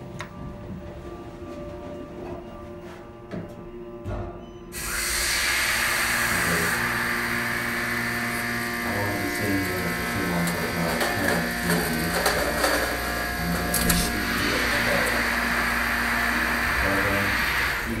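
Elevator in motion: after a few seconds of low hum with light clicks, a loud steady whirring hiss with a low hum comes in suddenly about five seconds in and runs on until it fades just before the end. This is the elevator's drive motor and the car travelling between floors.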